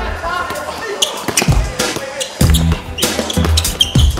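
A basketball being dribbled on a hardwood gym floor, sharp repeated bounces, with voices around it. A music track with a heavy bass line comes in about halfway through.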